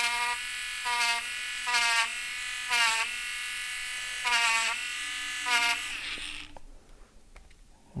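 Sakura battery-powered electric eraser running as it is pressed to pencil shading, its motor hum swelling in short spells roughly once a second with each touch to the paper. It winds down and stops about six seconds in.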